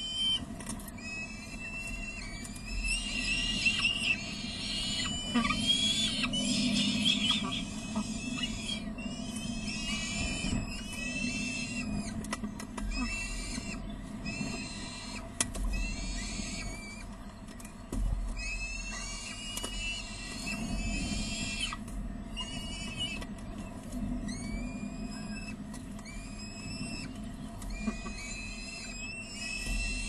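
Downy peregrine falcon chicks begging for food, a steady run of short, shrill, upward-curving calls, a bit under one a second, over a low hum.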